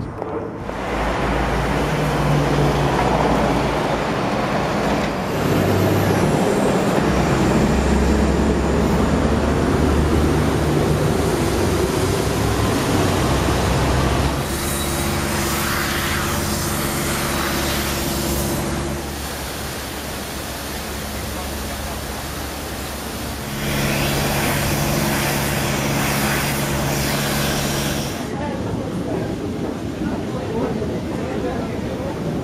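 Vehicle engines and traffic, with a steady low engine hum, changing abruptly several times.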